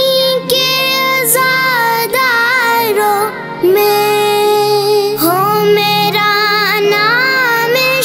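A boy's high solo voice singing an Urdu devotional manqabat in long, ornamented phrases that bend and waver in pitch, with short breaths between them. A steady low drone sounds beneath the voice.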